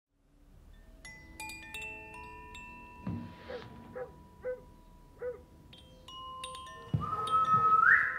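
Chime-like ringing tones enter one after another and overlap, with a few short pitched sounds in between. About seven seconds in comes a low thud, then a loud held tone that rises in pitch near the end.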